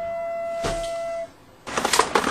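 A single steady held musical note that cuts off about a second and a quarter in. After a brief near-silent gap, loud music starts near the end.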